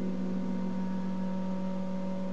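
Clarinet holding one quiet, steady low note that sounds almost like a pure tone, in a piece of chamber music for clarinet, violin and harp.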